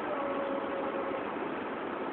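Steady outdoor background noise, with a faint held tone through about the first second.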